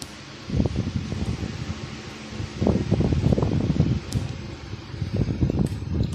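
Steady whir of a bench cooling fan under irregular bursts of low rustling and scraping, handling noise close to the microphone as the camera is moved in on the meter.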